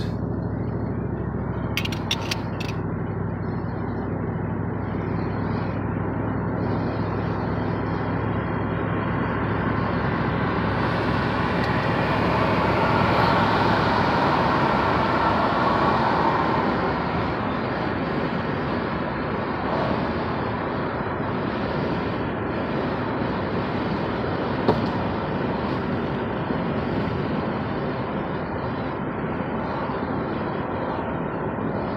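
Car cabin noise while driving: steady engine and road noise that grows louder for several seconds around the middle. A few sharp clicks come about two seconds in.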